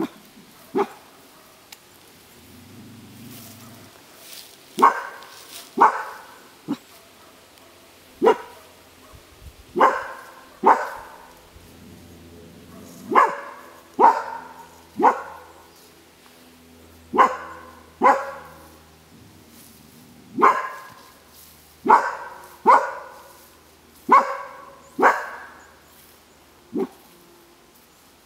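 A dog barking repeatedly in single sharp barks, many in pairs about a second apart, starting about five seconds in and going on to the end.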